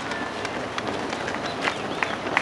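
Many runners' shoes slapping on asphalt as a pack passes, an irregular patter of footfalls.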